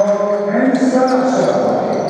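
A basketball being dribbled on a hardwood court in a large gym, with players' voices calling out.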